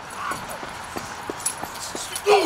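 Scattered knocks and scuffing footsteps on pavement as a scuffle starts, over a hiss of outdoor background noise, with a brief faint voice near the start.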